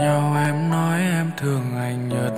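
A male voice singing long held notes with a slight waver in a Vietnamese pop ballad, breaking briefly a little past halfway before the next held note.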